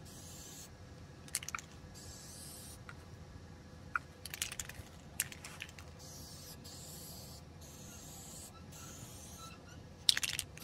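Aerosol spray-paint can hissing in short passes with brief pauses between them, as paint is laid onto a car's lower body panel. A few sharp clicks fall in the gaps between the spraying.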